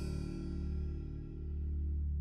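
Background music: low sustained notes fading away.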